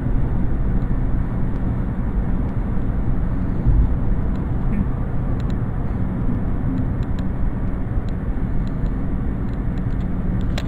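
Steady low rumble of a car's engine and tyres on the road, heard from inside the moving car's cabin, with one brief louder low thump a little under four seconds in.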